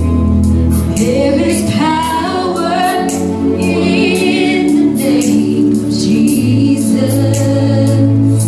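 Live worship music: women singing a worship song over band accompaniment with sustained low notes, their voices coming in about a second in.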